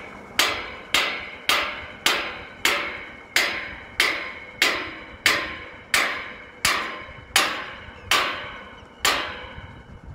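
Hammer blows on metal, about fourteen strokes at a steady pace of roughly three every two seconds, each one ringing briefly. The strokes slow a little near the end and stop about nine seconds in.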